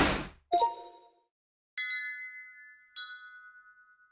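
Logo-sting sound effects: a rushing noise fades out in the first half-second, a short low tone follows, then two bright bell-like dings about a second and a quarter apart, each ringing out.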